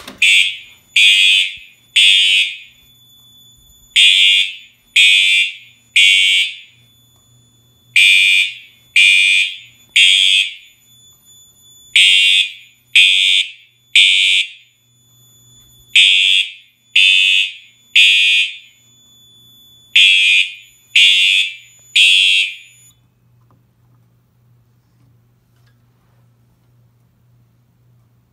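Fire alarm horn sounding the temporal-3 evacuation pattern after a manual pull station is pulled: three short blasts about a second apart, then a pause, repeated six times. The horn stops about 23 s in when the signals are silenced at the panel, leaving a faint steady electrical hum.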